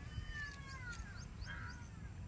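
A single long animal call, faint and falling slowly in pitch, with a few faint short chirps above it.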